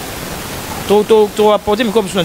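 A person's voice over a steady hiss. The hiss stands alone for about the first second, then the voice comes in.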